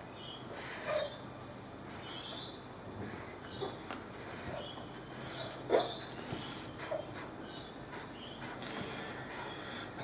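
Faint scratching of a pen drawing lines on paper in short, scattered strokes, over a low steady hum.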